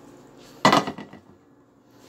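A single short clatter of a frying pan being handled at the kitchen sink, loud and sudden a little over half a second in, dying away within half a second.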